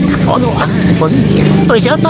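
An engine running steadily with a low hum, with people talking over it.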